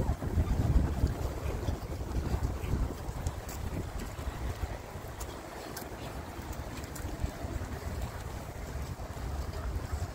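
Wind buffeting the microphone outdoors: a gusty low rumble that rises and falls, stronger in the first second or so.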